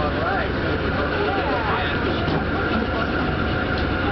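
Steady low rumble and hum of an Amtrak train standing at a station platform, with several people talking over it.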